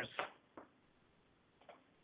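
The last of a man's spoken word trailing off, then near silence with two faint short clicks, about half a second and a second and a half in.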